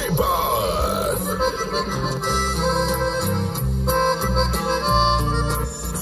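Live norteño band music: a sung line ends about a second in, then the accordion carries the melody over stepping bass notes and drums.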